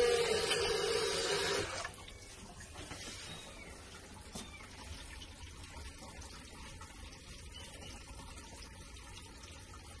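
Water running from a faucet into a newly plumbed bathroom sink and down its drain, the test run for leaks. It cuts off about two seconds in, leaving only a faint hiss with a few small ticks.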